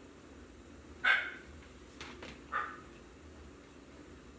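A dog barking twice: a sharp bark about a second in and a weaker one past the middle, with a couple of light clicks between them.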